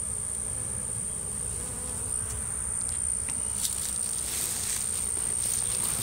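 A honeybee swarm humming steadily as the mass of bees crawls over the grass and up into the hive, with a thin, steady high-pitched whine underneath.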